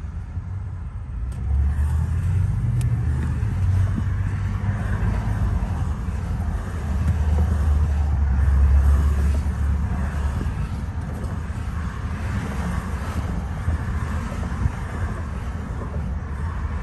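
Road noise inside a moving car's cabin: a steady low rumble of tyres and engine with a hiss of passing traffic, swelling twice, loudest about halfway through.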